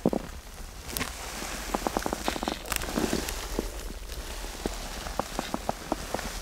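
Scattered light clicks and crackling rustle over a low wind rumble: handling noise of gloved hands and the camera around the shredded pieces of a snapped snowmobile drive belt in the opened clutch bay.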